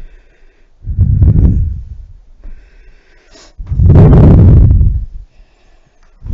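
Hard breathing from exercise, blowing straight into a head-worn microphone: two loud exhalations, a shorter one about a second in and a longer, louder one past the middle.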